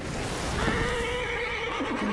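A horse neighing in one long drawn-out call that begins about half a second in.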